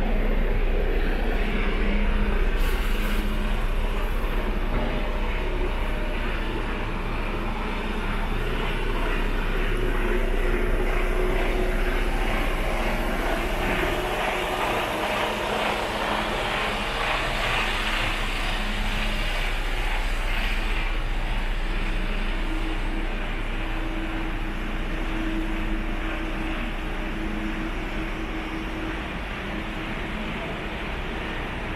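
Concrete mixer truck's diesel engine running close by: a steady engine drone whose pitch shifts a little over time, over a low rumble.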